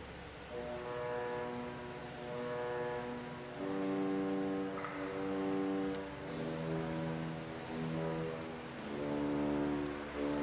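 Rieger Brothers pipe organ playing a slow series of held chords, each changing every few seconds. The stop speaks with a natural delay, taking a moment to reach full tone, like a bowed string instrument.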